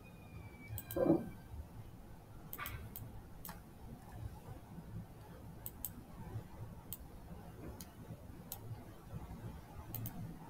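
Computer mouse clicking: about ten single sharp clicks at irregular gaps of under a second to a second or so. A brief soft vocal sound comes about a second in.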